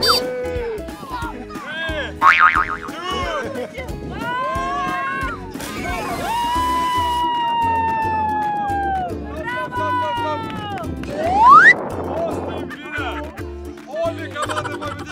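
Cartoon-style sound effects over background music with a steady beat: boing-like bouncing sounds, then a long, slowly falling tone, and a quick rising whistle near the end, the loudest moment.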